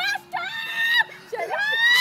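A girl screaming while being spun round on a playground spinner seat: two long, high-pitched screams, the second rising in pitch.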